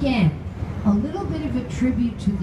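Speech: a woman talking, tour-guide narration.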